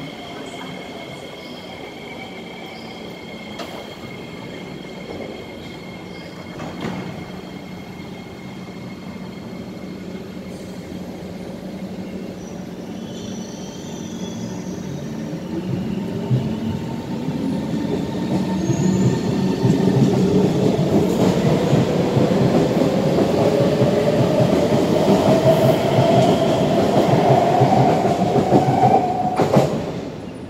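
SMRT Kawasaki C151 electric metro train humming steadily while standing at the platform, then pulling away: from about halfway through it grows loud as it accelerates past, its traction motors whining in a steadily rising pitch.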